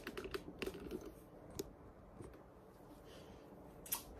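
Faint handling noise of a phone being tilted in the hand: a quick run of irregular small clicks and rubbing in the first second, one more click a little later, and a sharper click near the end.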